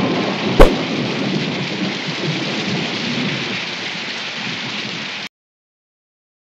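A sharp thunderclap about half a second in, then steady heavy rain pouring down, easing slightly before it cuts off suddenly about five seconds in.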